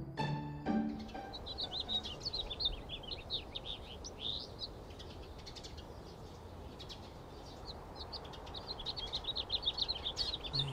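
Small songbirds chirping in quick, repeated short notes over a low steady background hiss, after a few notes of music die away in the first second.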